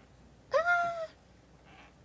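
A cat meowing once, a short call about half a second in that rises quickly and then holds.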